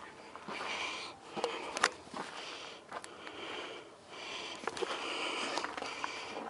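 A person breathing hard close to the microphone, several long breaths in and out, with a few sharp clicks and knocks of loose rock underfoot; the loudest click comes about two seconds in.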